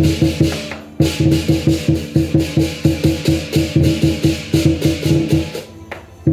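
Lion dance percussion of a large drum, cymbals and gong beating a fast, even rhythm. It breaks off briefly just before one second in and again near the end, then starts again.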